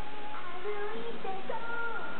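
A large J-pop girl group, some of them children, singing together over backing music, heard from a television broadcast recorded off the set: a few held notes that step up and down in pitch.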